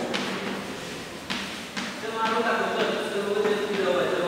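Chalk writing on a blackboard: a few sharp taps and scraping strokes of the chalk as letters are written.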